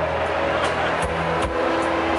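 Live band playing a song's instrumental introduction: held chords over a steady beat, with strikes about every 0.4 s.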